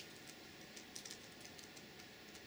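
Faint, irregular clicks of laptop keys being pressed, a handful of taps over two seconds, the first the sharpest, as the presentation is advanced to the next slide.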